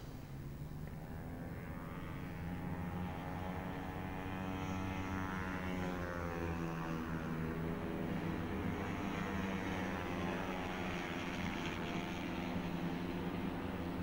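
A group of 218 cc four-stroke racing scooters running hard on track, their engine notes rising and falling together as they pass.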